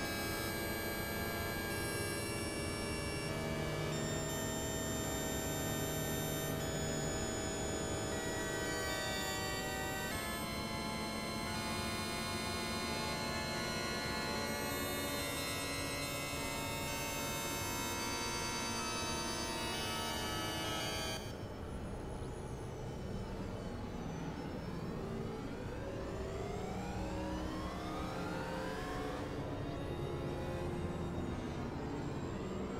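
Experimental electronic synthesizer drone music: many held, pure-sounding tones layered together, changing every few seconds. About two-thirds of the way through the high tones drop away and a cluster of pitch glides sweeps upward.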